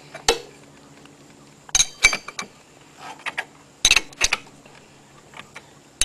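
Metal clinks and clicks of a socket and hand tools working the nut on a GY6 engine's variator, in a few short clusters of sharp strikes.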